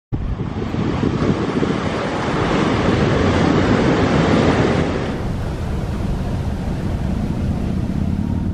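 Ocean surf washing onto a sandy, rocky beach, a steady rush of breaking waves with wind buffeting the microphone. The noise thins slightly about five seconds in.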